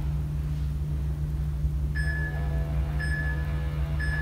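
Workout interval timer beeping a countdown to the start of an exercise interval: three steady beeps of one pitch, a second apart, in the second half, over a low steady hum.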